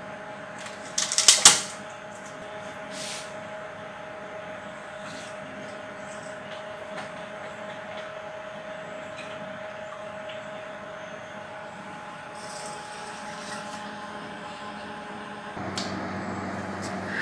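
A few sharp clicks and clatters of plastic tubes and caps being handled about a second in, over a steady equipment hum with one held tone. Near the end the hum changes to a lower, louder one.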